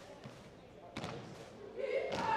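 Sharp impacts echoing in a large gymnasium, one loud knock about a second in, then the cheerleaders' shouted chant starting near the end.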